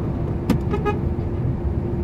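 Steady low engine and road rumble inside the cab of a truck driving at highway speed, with a thin steady hum running through it. A single sharp click about half a second in.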